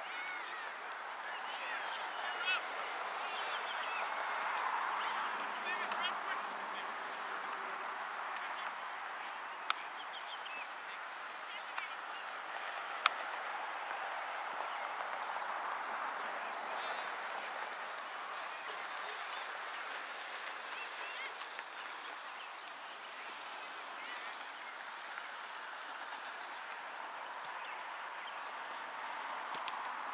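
Soccer field sound of players' distant shouts and calls. Two sharp ball kicks come about ten and thirteen seconds in.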